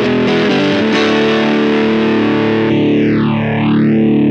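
Distorted electric guitar chord ringing through the Mile End Effects Ronald PreAmp 150, a JFET preamp modelled on the Roland RE-150 Space Echo's preamp, picked a few times near the start and then held. From just under three seconds in, a slow sweeping effect pulls the tone down and back up once over the sustained chord.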